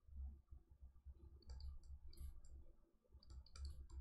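Faint, irregular clicks and ticks from a stylus on a pen tablet during handwriting, over a low steady hum.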